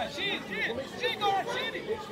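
Several voices shouting and calling out over a youth football match, some of them high-pitched and overlapping.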